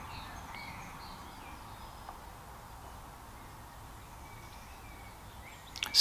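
Quiet background hiss with faint, scattered bird chirps in the distance, and a single small tick about two seconds in.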